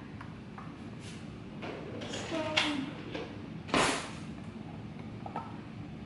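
Kitchen handling sounds while pumpkin puree is measured out: scattered light knocks and scrapes of utensils and containers, with one louder, brief sliding scrape a little under four seconds in.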